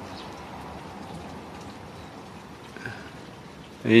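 Steady, even outdoor background hiss with no distinct events, and one faint short sound a little before the end.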